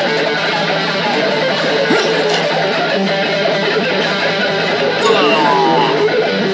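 A song played on electric guitar, with sliding, bending notes about five seconds in.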